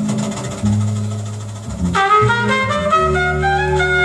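Live jazz recording with baritone saxophone and trumpet over bass. A held low note fades through the first half, then a bright new horn phrase comes in about halfway through.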